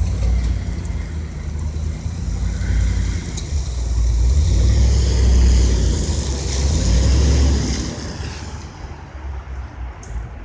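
Snowplow pickup truck driving past close by on a wet, slushy street: engine and tyre noise build to a peak as it passes, then fade as it moves away.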